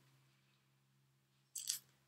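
Near-silent room tone with a faint steady low hum, broken about three-quarters of the way through by one brief, soft hiss.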